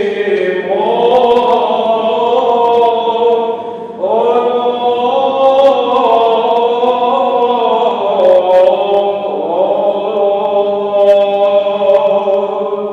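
Greek Orthodox Byzantine chant: voices sing a slow, melismatic melody over a steady held drone note (the ison), with a brief pause about four seconds in.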